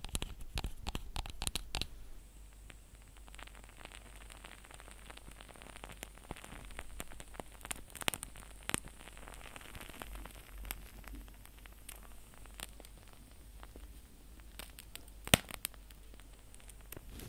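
An unseen object handled close to the microphone: dense crackling and clicking for the first two seconds, then softer crackly rustling with scattered clicks, and one sharp, loud click near the end.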